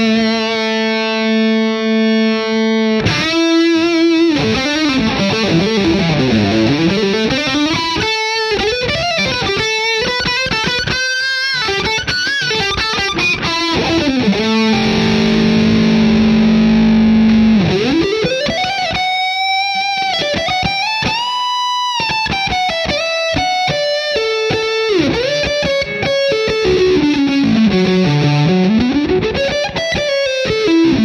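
Macmull Telecaster-style electric guitar played through the Vox MVX150H amp head's lead channel, with mild overdrive. It opens on a held note, then fast lead runs and a long held chord about halfway, followed by wide string bends rising and falling with vibrato.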